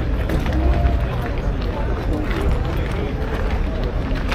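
People talking nearby, voices not clearly made out, over a steady low rumble.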